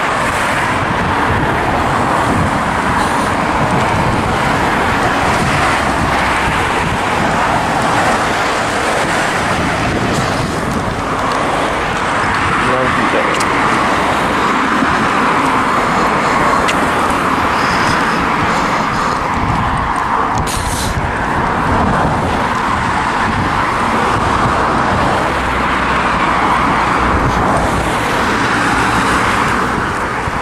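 Steady road traffic noise with cars passing along a main road.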